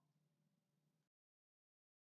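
Near silence: a very faint room hiss that cuts off to total silence about a second in.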